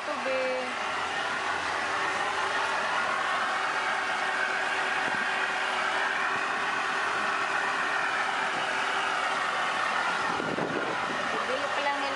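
Small outboard motor running steadily as the boat moves along: a steady drone over a wash of noise, unchanged in pitch.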